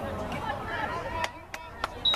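Spectators chatting, then in the second half a run of sharp, evenly spaced hand claps at about three a second.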